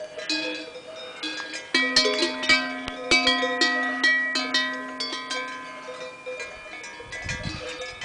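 Cowbell on a suckling young bull clanking in quick, irregular strikes as the animal butts and nudges at the cow's udder, each strike ringing on. The clanking is busiest and loudest a couple of seconds in, then thins out.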